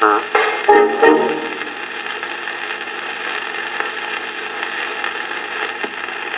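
The last notes of a song played from an old gramophone record on a portable record player, stopping about a second and a half in. After that, only the record's steady surface hiss and faint crackle as the stylus runs on in the groove.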